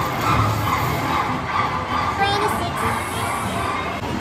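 Busy casino floor: a steady wash of crowd noise mixed with electronic slot machine tones that slide up and down in pitch.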